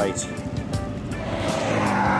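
A pickup truck's engine and tyres growing louder as it approaches and passes on the road, over background music.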